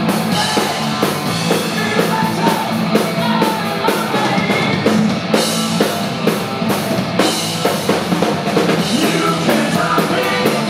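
A heavy metal band playing live: distorted electric guitar, bass guitar and a drum kit, loud and continuous with a steady beat.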